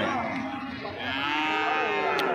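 A bull mooing: one long, drawn-out moo that grows louder about a second in.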